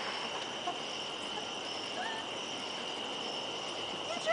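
Crickets chirring in a steady, unbroken high-pitched chorus.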